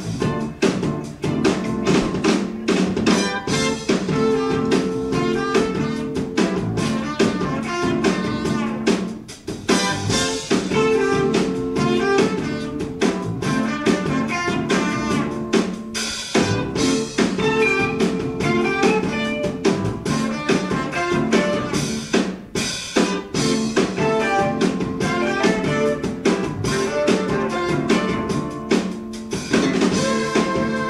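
Live jazz-fusion band playing a funk tune: a busy drum kit over a low bass riff that repeats every few seconds.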